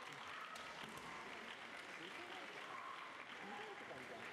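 Spectators applauding steadily in a large hall, with faint voices mixed in.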